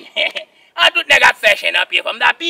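A man speaking in a quick run of words, with a brief pause about half a second in.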